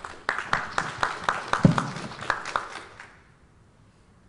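Brief audience applause, a few people clapping at about four claps a second, dying away about three seconds in. A single low thump partway through is the loudest moment.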